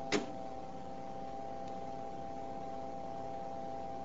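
Low, steady electrical hum made of several steady tones over a faint hiss, with one brief sharp sound just at the start.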